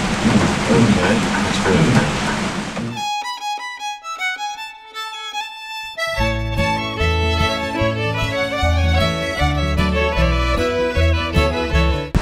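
Steady rain for about three seconds, then a fiddle tune starts: a few spaced violin notes, joined about six seconds in by a fuller backing with bass.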